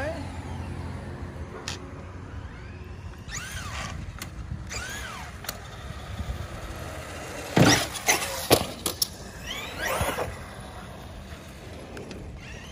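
Traxxas Revo 2.0 RC truck driving down the street, its motor whine sweeping up and down in pitch as it speeds up and slows. A cluster of loud, sharp knocks comes a little past the middle.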